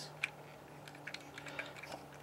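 Faint plastic clicks and ticks from a Takara Tomy Unite Warriors First Aid toy in ambulance mode being turned over in the hand. There are a handful of short ticks, the sharpest about a quarter second in, over a low steady hum.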